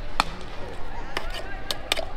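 Metal spoon clinking against a tin mixing cup about five times at an uneven pace, sharp short ringing clicks, as a jhal muri vendor stirs chopped chilli and onion into spiced puffed rice and chanachur.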